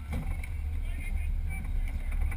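Steady low rumble inside a drag race car's cockpit as the car rolls slowly, getting louder right at the start.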